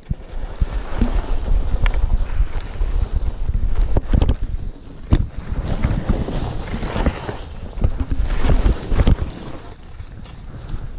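Skis scraping and chattering over choppy, packed snow in a series of turns, with short knocks as they hit bumps and wind buffeting the microphone in a heavy rumble. The scraping swells and fades with each turn, loudest around the middle and again near the end.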